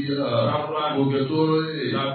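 Male chanting of a short phrase repeated over and over, each line held on steady notes and restarting about once a second.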